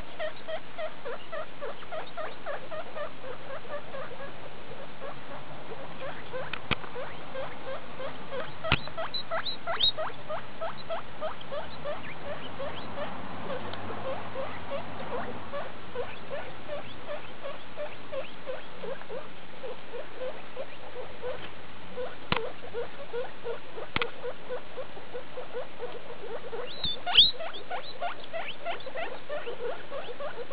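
Skinny pigs (hairless guinea pigs) making a steady stream of short, repeated calls, a few every second, as they move through grass. A few sharp clicks stand out now and then, the loudest near the end.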